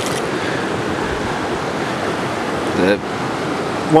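Steady rushing noise, even and unbroken, with a short voiced sound just before the three-second mark.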